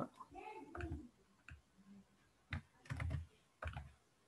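A few quiet computer keyboard keystrokes and mouse clicks, mostly in the second half, with some faint murmuring from the presenter near the start.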